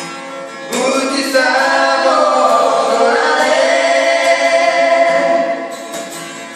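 A woman and a man singing together over a strummed acoustic guitar, holding long notes that bend in pitch from about a second in.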